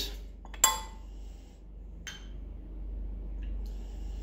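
A sharp clink of a glass bottle against steel bar tools about half a second in, then a lighter click near two seconds. Near the end comes the faint hiss of vodka pouring from a bottle's pour-spout into a steel jigger.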